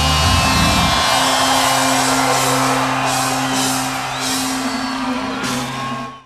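Loud live heavy rock band noise at the close of a song: distorted electric guitars ringing out with feedback. The deep low notes drop away about a second in, leaving long droning notes held under a dense wash.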